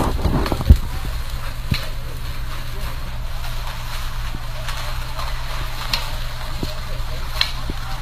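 Outdoor brush-clearing work site: a steady low rumble with scattered sharp knocks and snaps, and faint voices in the background.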